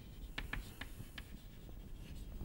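Chalk writing on a chalkboard: faint strokes with a few sharp ticks of the chalk against the board in the first second or so.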